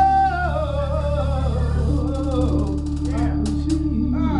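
A woman singing a gospel song into a microphone, holding a long wavering note that slides downward, over steady instrumental accompaniment. A few sharp taps sound in the second half.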